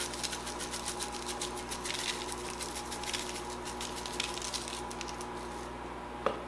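Pepper being shaken from a small glass shaker jar over biscuit dough: a fast run of light rattling taps that stops shortly before the end.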